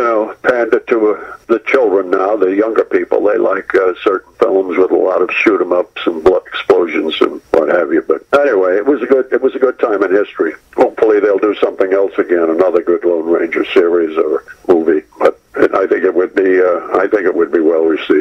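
A man talking over a telephone line, his voice thin and narrow as on a phone call.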